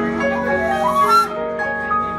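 Live jazz band playing: flute lines with bending pitches over keyboard, electric bass and drums.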